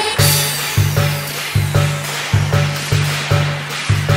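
Khmer nonstop dance remix music with a steady beat and a heavy pulsing bass line; a falling swoosh effect opens it.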